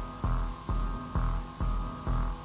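Electronic synthesizer throb, a low machine-like pulse repeating about twice a second over a steady hum, four pulses in all.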